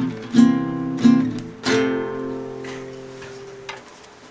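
Acoustic guitar strummed: three chords in quick succession, then the last chord rings on and slowly dies away.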